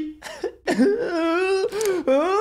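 A man's strained, drawn-out vocal sound held for about a second, pitched and wavering, with a shorter burst of voice near the end.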